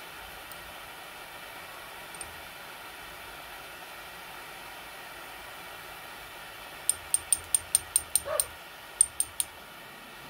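A metal spatula rapped sharply against the porcelain evaporating dish: eight quick taps about seven seconds in, then three more a moment later, sounding like knocking on a door. A dog gives a short whine in the middle of the tapping, and the steady hiss of the propane torch runs underneath.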